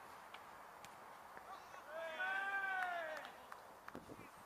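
A man shouts one long, drawn-out call on a football pitch, starting about two seconds in and lasting over a second, its pitch rising then falling. A couple of sharp knocks come just before the end, with steady faint outdoor background.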